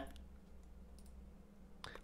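Near silence over a low steady hum, with a few faint clicks.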